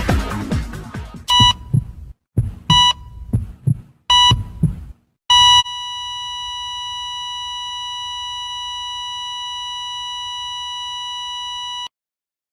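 Three short electronic beeps about a second and a half apart, with low thumps between them, then one long unbroken beep held for about six seconds that cuts off suddenly. The tail of music fades in the opening second.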